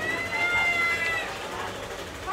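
A single drawn-out, high-pitched cry lasting about a second. It rises at the start, holds, then falls away.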